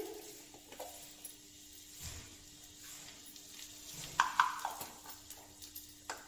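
A few light clinks of steel kitchen bowls and utensils, the clearest about four seconds in, over a faint steady hum and soft hiss.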